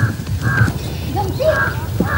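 Crows cawing several times in short, separate calls.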